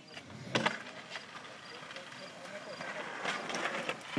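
Skateboard wheels rolling on pavement, growing louder as the rider approaches, with a sharp clack about half a second in.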